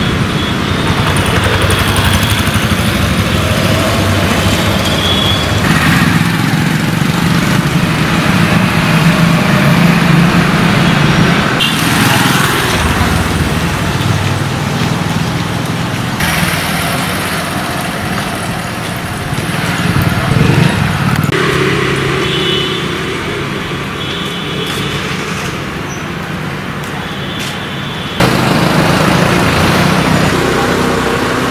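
Street ambience of light road traffic, with vehicle engines running and passing, in several takes that change abruptly at the cuts.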